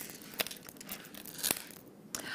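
Strands of gemstone beads clicking and rustling against each other as they are handled. Two sharper clicks stand out, one just under half a second in and one about a second and a half in.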